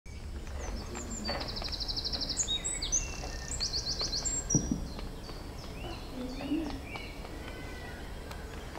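Small birds calling: two rapid high trills in the first half, then scattered short chirps, over a steady low outdoor rumble. A brief low sound comes about halfway through.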